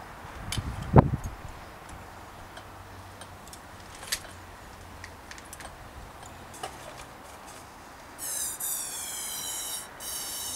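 Clicks and knocks of bicycle handlebar parts being handled, with one sharp knock about a second in. Near the end comes a long, high squeak, a rubber grip sliding onto the alloy handlebar.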